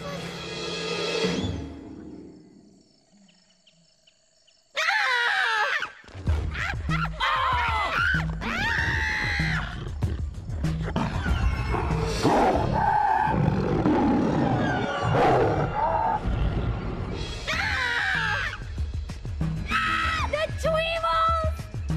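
Cartoon soundtrack music fades to a brief hush, then a sudden loud outburst of high, wavering cries breaks in about five seconds in, with music and a steady beat running under them to the end.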